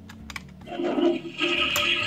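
Toilet Trouble toy toilet's flush handle pressed with a few small clicks, then the toy's flushing sound effect plays through its small speaker, starting about half a second in.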